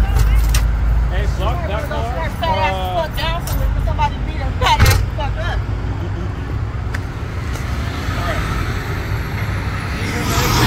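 Steady low rumble of traffic on a busy multi-lane road. A person's voice talks briefly between about one and four seconds in, and there is a sharp knock about five seconds in.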